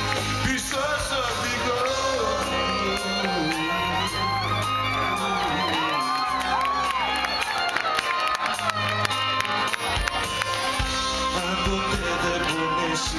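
Live Greek laiko band with electric guitar and bouzouki playing an instrumental passage between sung verses, while the audience cheers and sings along. It is heard from inside the crowd.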